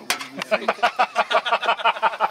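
A person laughing: a quick, even run of voiced pulses, about seven a second.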